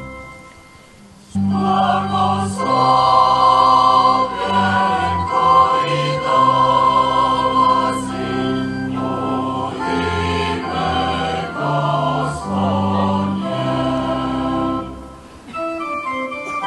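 Choir singing a slow hymn over sustained organ chords, starting about a second and a half in after the organ dies away briefly.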